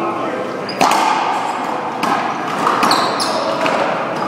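One-wall racquetball rally: sharp smacks of racquet on ball and ball off the wall and floor, several in a few seconds, each ringing in a large echoing hall, over background voices.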